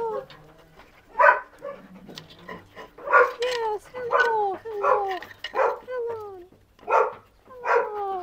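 Dogs whining at a cage grate: about eight short, downward-sliding whines in an irregular string as they press toward a hand petting them through the bars.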